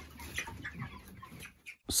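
A flock of broiler chickens calling in short, faint, scattered notes, cut off abruptly near the end.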